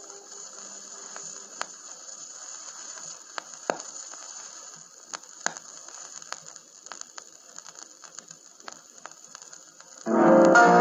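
Vinyl LP surface noise in the lead-in groove between tracks: a steady hiss with scattered clicks and pops from the stylus. A faint held note from the end of the previous song fades out about a second in.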